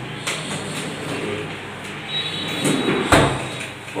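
Drawers of a PVC dressing unit sliding on their runners and being pushed shut, with a few sharp clicks and a louder knock about three seconds in.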